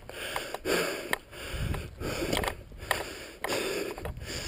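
A mountain biker breathing hard in rapid, repeated breaths while riding, with a few sharp clicks and knocks from the bike.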